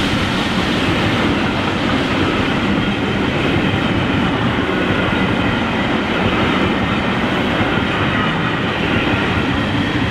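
Passenger coaches of a steam-hauled express rolling past close by, with a steady rumble and clatter of wheels on the rails.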